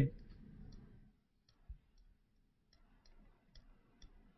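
Faint, scattered small clicks in a quiet room, about a dozen irregular ticks over a few seconds, with one soft low thump a little under two seconds in.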